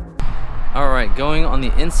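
Mostly a man speaking. Background music cuts off just after the start, giving way to a steady background hiss under the voice.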